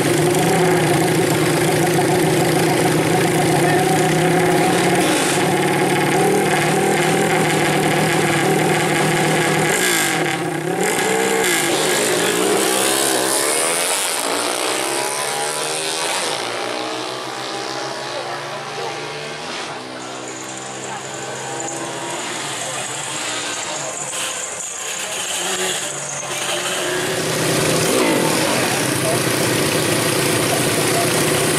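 Modified 120cc four-stroke drag motorcycles: first an engine running steadily at the start line, then, after about ten seconds, bikes launching and accelerating away down the strip, engine pitch rising in repeated sweeps and fading with distance. Near the end a bike's engine runs up close again at the start line.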